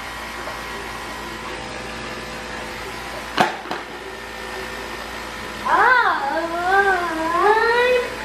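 A steady machine hum throughout; about three and a half seconds in, a broom clatters once onto a stone tile floor. From about six seconds, a boy's voice draws out a long, wavering 'I-I-I-I'mmm' that climbs in pitch.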